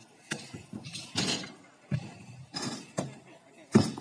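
Stunt scooter knocking and clattering on a concrete skatepark: several sharp metallic clacks of the deck and wheels on the ground, the loudest near the end as the rider lands a briflip.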